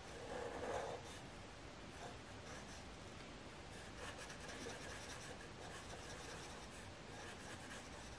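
Black felt-tip marker rubbing and scratching on paper in faint, short repeated strokes as an eye is coloured in, with one louder stroke under a second in.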